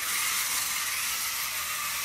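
A steady, even hiss with no distinct tones or knocks.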